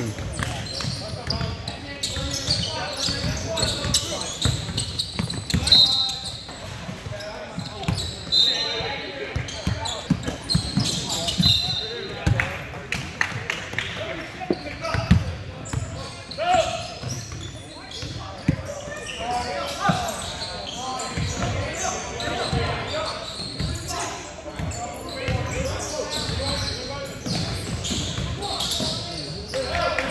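Basketball game on a hardwood court: a ball bouncing repeatedly on the floor, a few short high sneaker squeaks, and players' and spectators' voices calling out.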